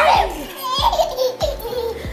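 A baby laughing and giggling in short bursts, playing face to face with an older child.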